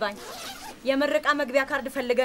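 Speech in a high-pitched voice, with a short breathy hiss just before the voice resumes.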